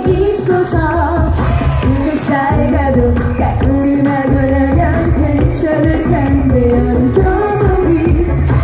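Loud live Korean pop song over a concert sound system: a woman singing the melody over a heavy bass beat.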